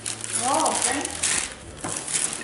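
Christmas wrapping paper rustling and crinkling as it is pulled off a gift box, with many small crackles. A brief vocal sound comes about half a second in.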